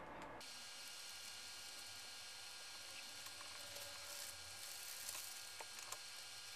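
Faint steady room hiss with a few faint light ticks in the second half.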